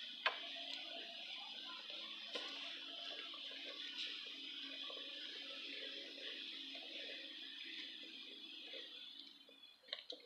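Goat nibbling and chewing shaved carrots in a plastic feed bucket: faint scattered crunches over a steady low hum and hiss, which drop away just before the end.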